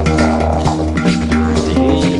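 Recorded didgeridoo music: a steady low didgeridoo drone with a changing melody and percussion over it.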